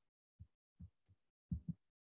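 A handful of short, soft low thumps at uneven spacing, with dead silence between them. The two loudest come close together near the end.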